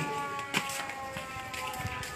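A distant siren wailing, its pitch slowly sinking, with a sharp knock about half a second in.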